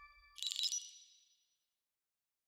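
Sound effect of an animated studio logo: the last ringing tones of the sting fade out, then a bright, high chime strikes about half a second in and rings away within a second.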